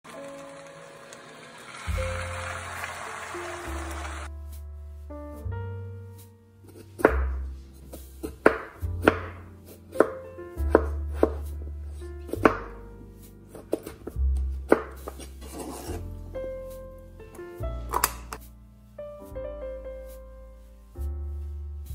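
A chef's knife slicing raw potatoes on a plastic cutting board: about a dozen sharp cuts, irregularly spaced, starting about seven seconds in, over background piano music. A hiss fills the first few seconds.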